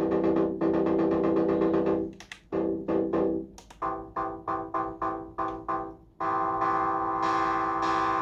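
Arturia MicroFreak synthesizer playing chords in paraphonic mode: a chord held for about two seconds, a run of short repeated chords at about three a second, then a chord held from about six seconds in.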